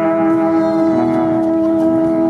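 A brass ensemble holding a long, steady chord, with a lower note joining about halfway through.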